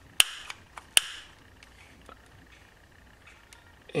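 Long-nozzle butane utility lighter clicked twice, about a second apart, each piezo snap followed by a short hiss, with a few fainter ticks. The lighter is nearly out of fuel.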